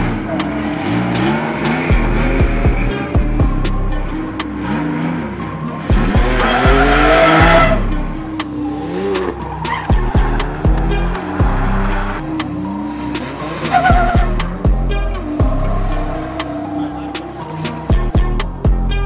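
Drift cars sliding under power: engines revving up and falling off again and again, with tyres squealing and skidding on the asphalt, loudest about six to eight seconds in. Background music with a steady beat runs underneath.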